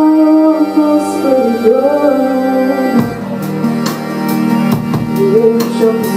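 Live indie pop: a woman singing over sustained keyboard chords, with the drum kit coming in with cymbal and drum hits about halfway through.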